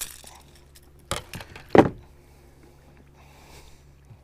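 Small metallic clinks and rattles from a hard jerkbait's treble hooks swinging on the line: a click at the start, a few short clinks about a second in and a sharper one a little later.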